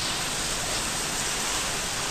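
Heavy rain falling in a steady, even hiss.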